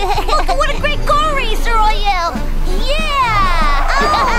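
Cartoon background music with a child's voice making wordless, squeaky exclamations, and a long falling glide near the end.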